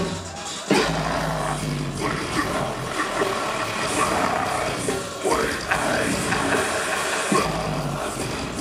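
Live deathcore band playing loud: distorted, down-tuned electric guitars, bass and drums with the vocalist's harsh vocals. After a brief drop at the very start, the full band comes back in with a heavy low hit under a second in.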